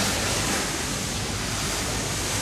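A steady, even rushing noise with no distinct events in it.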